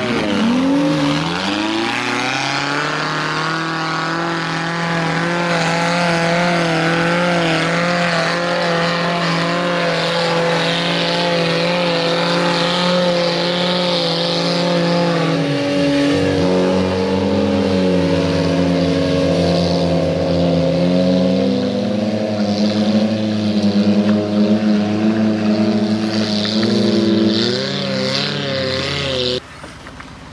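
Off-road 4x4 engine held at high revs, its wheels spinning in deep mud during a tow recovery. The engine note dips briefly about halfway through, rises again near the end, then cuts off suddenly.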